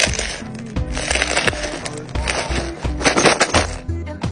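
Background music with a steady bass line, over bursts of crackling and clinking as ice cubes crack loose inside a silicone ice-maker bucket.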